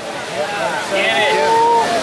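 A man's voice, one long drawn-out call from about half a second in, over the steady wash of ocean surf.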